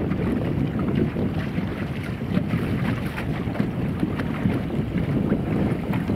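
Wind buffeting the microphone: a steady low rumble with a few faint ticks scattered through it.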